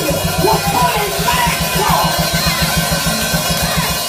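Live church-band music: a rapid, even low drum-and-bass beat with voices wavering over it.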